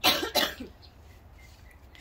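A person coughing twice in quick succession, both coughs within the first second, the first the loudest.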